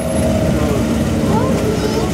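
Škoda Felicia rally car's engine idling steadily on the start ramp.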